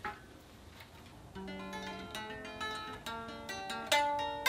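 Gibson SG electric guitar, picked note by note in a slow melodic line that begins about a second and a half in, after a soft click.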